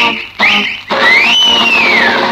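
Instrumental passage of a 1970s Tamil film song: plucked string notes about two a second, then a long high note that slides up and back down.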